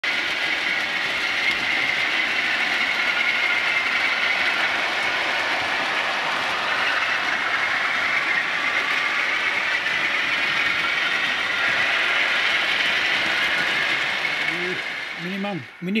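Model trains running on the layout: a steady rushing rail and wheel noise that fades out near the end.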